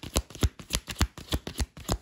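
A deck of reading cards being shuffled by hand: a quick, even run of sharp card slaps, about four a second.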